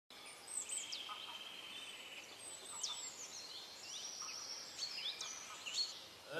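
Faint songbirds chirping and whistling, a string of short sweeping calls over a steady soft hiss.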